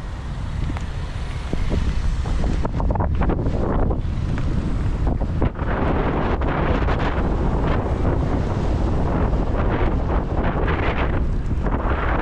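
Wind buffeting the microphone of a camera riding along the road: a heavy low rumble with gusts that swell and fade, getting louder about two seconds in.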